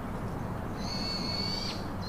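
A bird calling: one steady, high whistled note held for just under a second in the middle, with short falling chirps from birds just before and after it.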